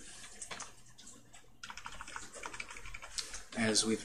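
Typing on a computer keyboard: a quick run of keystrokes with a short pause after about a second, then typing again.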